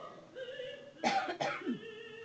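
A person, most likely in the audience, coughs twice in quick succession about a second in, over quiet sustained music.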